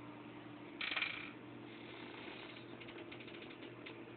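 A hamster scrabbling over a small plastic keyboard, its feet clicking the keys: a short rattling clatter about a second in, then a run of faint rapid clicks.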